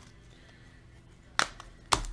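Quiet room tone, then two short sharp snaps about half a second apart near the end, from a stack of trading cards being handled and a card laid down on the table.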